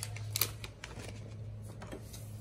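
Light clicks and rustles of small baits and plastic being handled at an open clear plastic tackle box, with one sharper click about half a second in, over a steady low hum.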